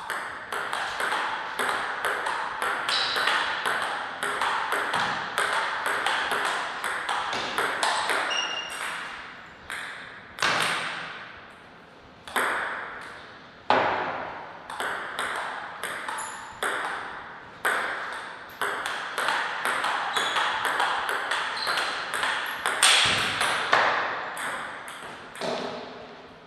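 Table tennis ball struck back and forth by rubber-faced paddles and bouncing on the table in fast rallies: a run of sharp clicks, several a second, broken by short pauses between points.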